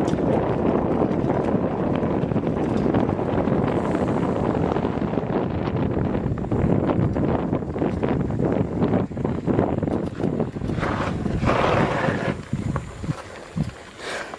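Wind rushing over the camera microphone while a bicycle rolls and rattles over a dirt road: a steady low rush with frequent small knocks. It eases off in the last second or two.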